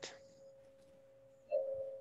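A faint steady tone, joined about one and a half seconds in by a short, louder hum of a few pitches just before speech resumes.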